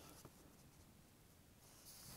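Near silence, with faint rustling of paper book pages being handled, a little stronger near the end.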